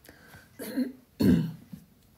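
A man clearing his throat in two short bursts, the second louder and rougher.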